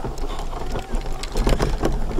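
Wheelchair rolling over rough, lumpy grass: a low rumble with scattered knocks and rattles as it jolts over the bumps.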